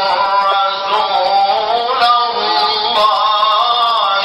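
A man reciting the Quran in the melodic tajwid style, one unbroken line of long held notes that glide and ornament up and down in pitch.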